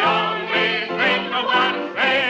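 A man singing a drinking song with strong vibrato, joined by a mixed chorus, over musical accompaniment.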